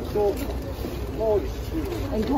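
Nearby people talking in short snatches, over a low rumble of wind on the microphone.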